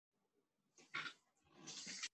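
A person breathing hard during a yoga flow: a short, sharp breath about a second in, then a longer breath that grows louder near the end.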